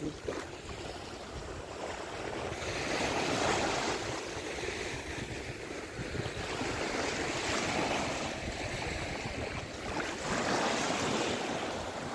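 Small sea waves washing onto a sandy shore, the surf noise swelling and easing every few seconds, with wind on the microphone.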